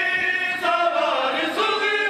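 Group of men chanting a nauha mourning lament in unison, with sharp strikes about once a second, typical of rhythmic chest-beating (matam) marking the beat.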